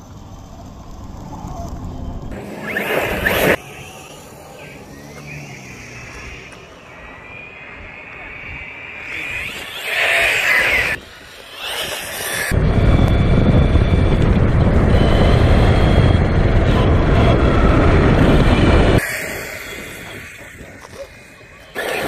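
Arrma Kraton 6S V3 RC monster truck's brushless electric motor whining up as it accelerates, with bursts of its tyres spraying gravel. A loud steady rushing noise fills several seconds in the middle.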